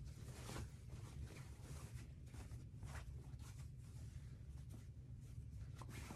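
Faint rustling and brushing of fabric being handled, over a steady low hum.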